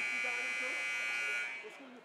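Gymnasium scoreboard buzzer sounding a steady electric buzz that fades out about a second and a half in, marking the start of the fourth quarter.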